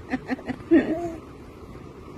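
A person's voice: a quick run of short voiced pulses, about six a second, like a soft chuckle, dying away in the first half-second, then one short 'oh'-like sound with a rise and fall in pitch, followed by quiet room tone.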